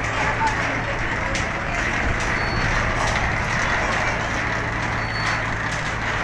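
A moored passenger speedboat's engine running with a steady low hum, under the continuous chatter of a crowd of passengers.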